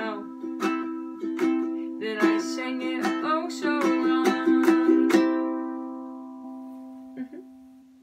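Ukulele strummed in chords, with a girl's voice singing over the strumming in the first half. About five seconds in a final chord is strummed and left to ring, fading away, with a light knock near the end.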